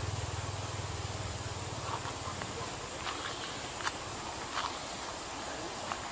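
A vehicle engine running with a low, even hum that fades away over the first second or two. After that there is a steady outdoor hiss with a few short, faint clicks.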